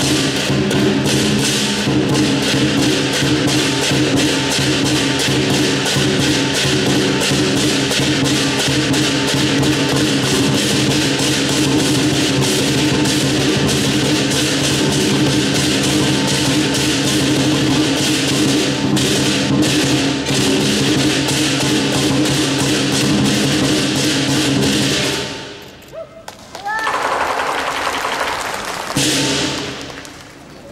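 Southern lion dance percussion ensemble playing continuously: big lion drum with cymbal crashes and a ringing gong, driving the lion's pole routine. The percussion stops suddenly about 25 seconds in, followed by a short loud burst of other sound near the end.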